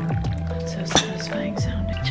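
Coffee pouring from a stainless thermal carafe into a ceramic cup, with liquid dripping and splashing, under background music with a steady bass.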